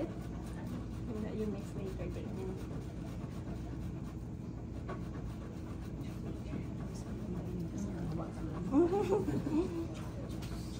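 Cold unsalted butter being grated on a fine metal box grater, a soft, repeated rasping, over a steady low kitchen hum.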